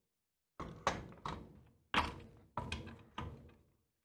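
Metal dovetail clamp on an aluminium C-beam rail knocking against the ARRI dovetail plate on a tripod head as it is fitted into place: about seven sharp clunks and knocks over three seconds.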